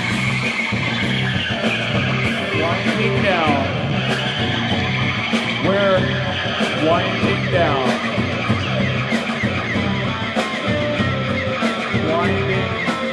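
Live rock band playing: electric guitar, electric bass and drum kit, with steady cymbal and drum hits throughout.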